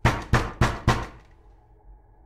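Four knocks on a door in quick, even succession, about a third of a second apart, each ringing out briefly.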